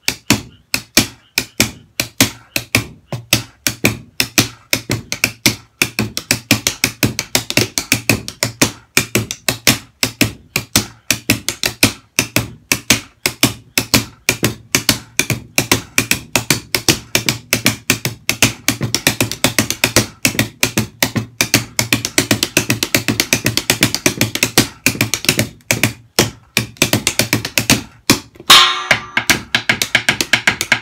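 Drumsticks playing a triplet shuffle practice pattern on homemade, cloth-covered cardboard-box drums and a practice pad, dry clicky strokes that get gradually faster and denser. A louder ringing hit comes near the end.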